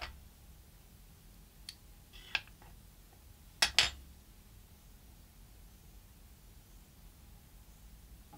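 Small stainless steel and plastic parts of a rebuildable tank atomiser being handled and pulled apart by hand: a few light clicks, the loudest pair about three and a half seconds in, over quiet room tone.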